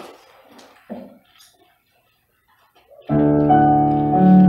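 A soft thump and small shuffles, then about three seconds in a Roland digital piano starts the song's introduction with loud sustained chords.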